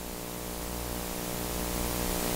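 Steady electrical hum with a buzz of many overtones under a constant hiss: the recording's background noise during a pause in speech.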